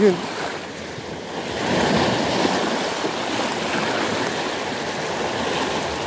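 Small sea waves washing over shoreline rocks, the wash swelling about a second and a half in and then running on steadily.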